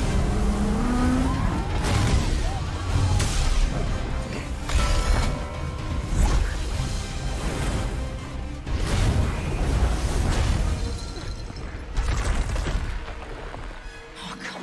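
Action-film soundtrack: a music score mixed with loud surging, crashing water effects and a series of booming hits.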